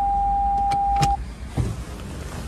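Toyota Corolla Cross's in-cabin reversing warning tone: one steady high electronic beep held while reverse is selected. It is interrupted by a couple of sharp clicks, and it cuts off suddenly a little after the middle.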